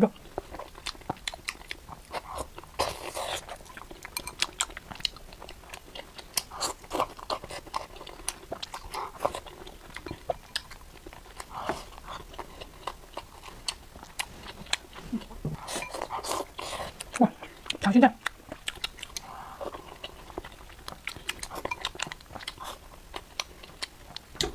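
Close-up chewing of meat-stuffed green peppers and rice, with a steady run of small wet clicks and crunches from the mouth and a few brief slurps.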